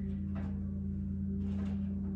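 A steady low electrical-type hum with a few fixed pitches, and a faint tap or two as something is handled.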